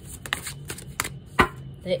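A deck of oracle cards being shuffled and handled: a run of irregular crisp card snaps, with one sharper slap about one and a half seconds in.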